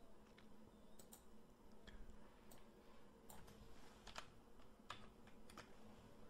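Faint, scattered clicks and key taps from a computer mouse and keyboard, about a dozen irregular ticks over near-silent room tone, as a date is typed in.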